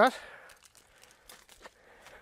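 Faint crackling and crunching of dry cut water reed stalks, a few small scattered crunches, as a reed hook is stuck into the ground among the cut reed.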